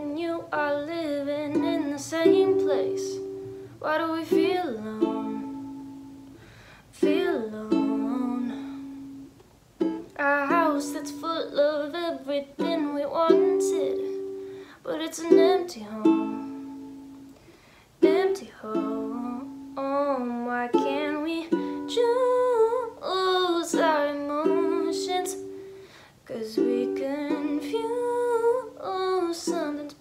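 A woman singing a song while strumming chords on a ukulele, her voice coming in phrases with short breaks between them.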